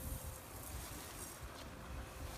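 Faint outdoor background with an uneven low rumble of wind on the microphone and a faint steady hum.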